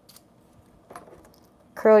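Faint rustles and light clicks of a punched paper daisy being curled with a plastic spatula, with one small scrape about a second in; a spoken word comes in near the end.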